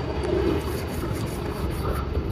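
Black dry guide-coat applicator pad rubbed back and forth over fiberglass gelcoat, a soft steady scrubbing, to show up stress cracks in the surface. Under it runs a steady low rumble of outdoor background noise.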